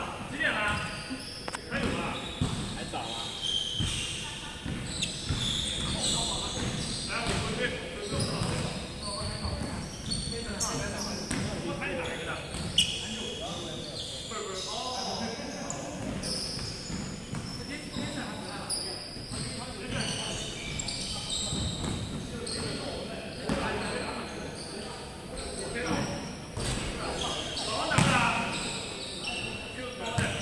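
Basketball bouncing on a hardwood gym floor during play, with players' voices calling out, echoing in a large hall. Two louder thuds stand out, about 13 seconds in and near the end.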